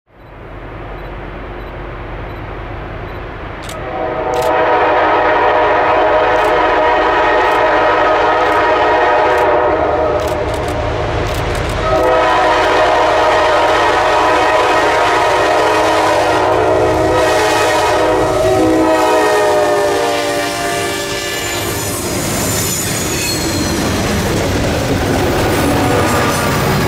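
Diesel freight locomotive approaching with its multi-note air horn sounded in two long blasts over the engine's low rumble. Around twenty seconds in the horn notes slide downward, and the train rolls past with a high-pitched squeal of wheels.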